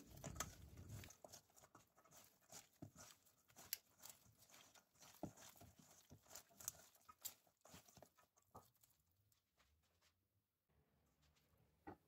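Faint, irregular wet squelching and slapping of bare hands kneading raw pork ribs with sliced vegetables and spices in a metal bowl, dying away to near silence for the last few seconds.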